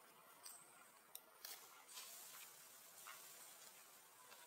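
Near silence, with a few faint clicks and a soft rustle.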